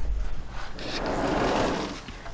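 A sliding door being pushed open, one long scraping rumble that swells and then fades.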